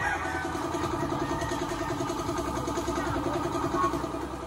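A small engine or motor running steadily at an even speed, a level hum with a fast, even pulse.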